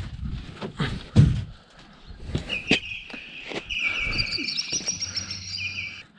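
Small birds chirping and trilling in quick repeated phrases, starting about two and a half seconds in, after a few knocks and handling noises.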